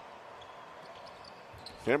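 A basketball being dribbled on a hardwood court, over steady arena ambience.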